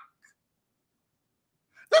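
Near silence: a man's high exclamation cuts off at the start, the audio stays dead silent for about a second and a half, and then he starts speaking again near the end.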